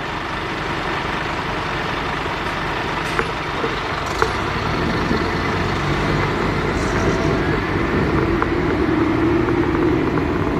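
Car engine and road noise, steady while the car waits, then getting louder as it pulls away about halfway through. A few short sharp clicks around three and four seconds in.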